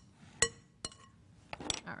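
A utensil clinking against a glass mixing bowl while margarine is cut into flour for biscuit dough: three sharp clinks with a short ring, the first the loudest.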